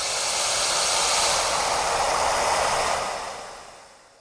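A long whoosh sound effect for an animated logo: a rushing swell of noise that builds up, holds for a couple of seconds and fades away near the end.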